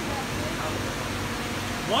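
Steady background noise of a busy indoor fish market: an even hiss with a low hum underneath, and faint voices.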